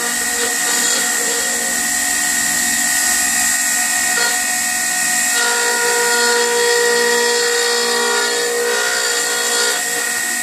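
Electric wood router running at full speed on a pantograph duplicator, its bit cutting into a square lumber blank: a steady high whine over the hiss of the cut. The tone shifts about five seconds in as the load on the bit changes.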